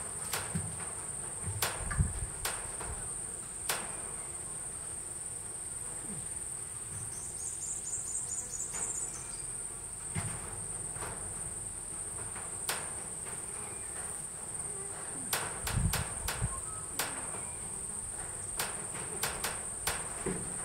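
Steady high-pitched insect chirring, with scattered sharp clicks and a few low thumps, the loudest about three quarters of the way through.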